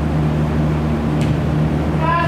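Steady low hum in a large indoor sports hall, with one short, sharp click a little over a second in.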